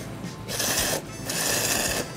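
A person slurping ramen in two loud slurps, the second one longer and ending abruptly. Background music plays underneath.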